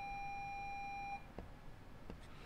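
A steady electronic beep tone that cuts off about a second in, followed by a couple of faint clicks.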